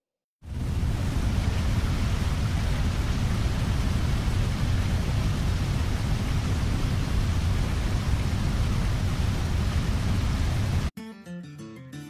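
A loud, steady rushing noise with no pitch, heaviest in the low end, that stops suddenly about eleven seconds in; guitar music starts right after.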